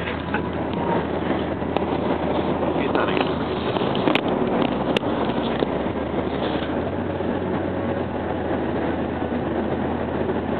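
Steady road and engine noise inside a moving car's cabin, with two short sharp clicks about four and five seconds in.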